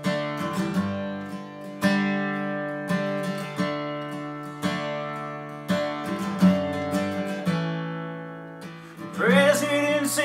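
Acoustic guitar strummed, one chord about every second, each ringing and fading before the next, as the intro of a song. A man's voice starts singing near the end.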